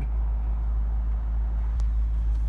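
Steady low rumble inside the car's cabin, with a faint single click near the end.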